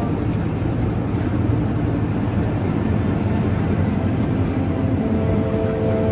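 Steady low rumble of road and engine noise inside a moving vehicle's cabin. Music comes in near the end.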